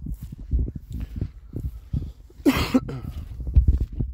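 A man coughs, a harsh double cough about two and a half seconds in, over the steady low thuds of his footsteps through grass.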